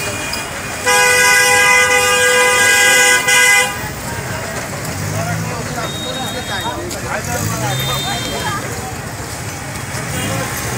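A vehicle horn gives one long, loud blast of nearly three seconds, starting about a second in, over the noise of a busy street. Afterwards, voices of people in the street and a few faint short high tones are heard.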